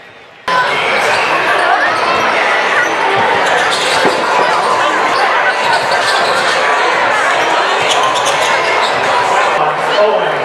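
Basketballs being dribbled on a gym floor amid dense, echoing crowd chatter, starting abruptly about half a second in.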